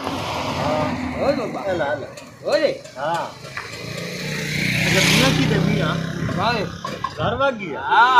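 Men talking, while a motor vehicle drives past on the dirt road. Its engine and tyre noise swell to a peak about five seconds in, then fade.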